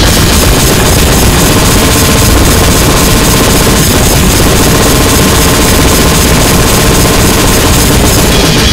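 Extremely loud, saturated noise-grind music: a dense wall of distorted noise over rapid, machine-gun-like drumming, running without a break.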